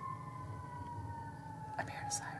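Distant fire truck siren, faint and muffled, heard from inside a house: one long wailing tone gliding slowly downward in pitch.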